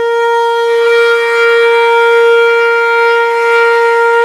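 Opening of a recorded Bollywood song: one long, loud, steady note on a wind instrument, held without a break.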